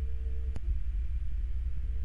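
A steady low rumble with a faint hum, and a single faint click about half a second in.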